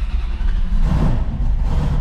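A 1974 Dodge Challenger's engine running with a steady low rumble, a little more throttle about a second in, as the car is driven slowly forward.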